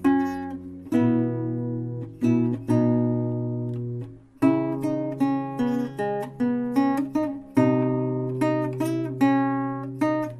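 Acoustic guitar playing a slow instrumental folk piece: notes and chords plucked and strummed, each ringing and fading before the next, with a short break about four seconds in.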